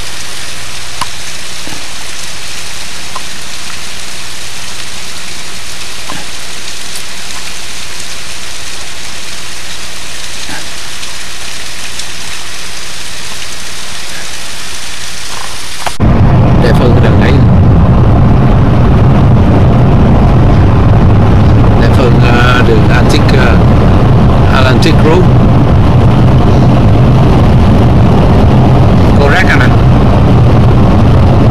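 Steady hiss of water spilling and splashing down a roadside rock face. About halfway through it cuts suddenly to the louder, low, steady rumble of a vehicle driving, heard from inside the cabin, with a few faint clicks.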